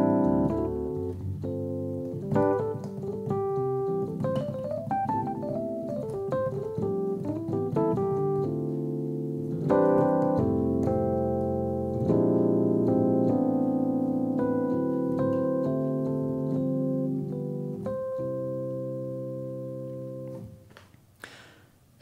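Roland RD-2000 stage piano playing its 1979 Tine electric piano patch, a Rhodes-style sound, in chords and melodic phrases; the last chord rings out and fades away shortly before the end.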